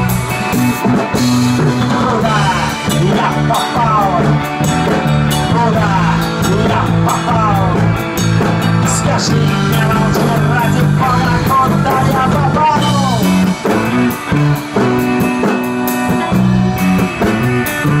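A rock band plays an instrumental passage: an electric guitar with sliding, bending notes over a steady bass line and drums.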